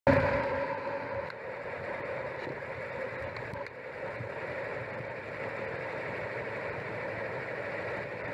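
Steady, muffled road and wind noise picked up by a camera on a moving bicycle. It is loudest in the first second, then holds level.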